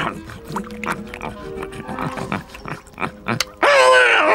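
Cartoon boar-like creature eating noisily from a bowl, a run of short quick snuffles and chomps over background music; near the end it gives a loud squeal that wavers in pitch.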